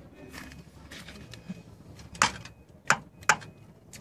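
An adjustable wrench working a brass compression fitting on a solar geyser's copper pipe, being tightened to stop a leak: three sharp metallic clicks in the second half.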